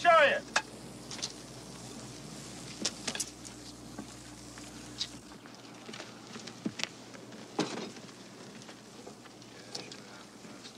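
Steady hiss with scattered crackles and pops from smouldering, freshly hosed fire wreckage.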